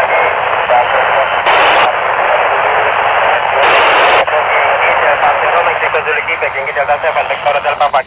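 Handheld FM transceiver's speaker hissing with the IO-86 satellite downlink: a steady rush of band-limited static with weak signals fading in and out. Two brief louder bursts of noise come about one and a half and three and a half seconds in.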